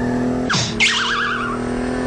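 Sound effect of a car accelerating hard: a steady engine hum, then about half a second in a sweeping screech and a warbling tyre squeal.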